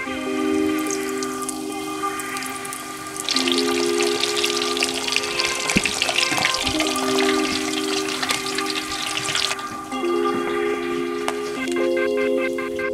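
Breaded mozzarella sticks frying in hot oil in a pot: a crackling sizzle that swells about three seconds in and drops away about ten seconds in, with music underneath.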